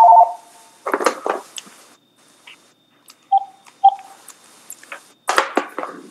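Electronic phone tones on a conference-call line: a steady two-note tone that cuts off just after the start, then two short beeps about half a second apart in the middle.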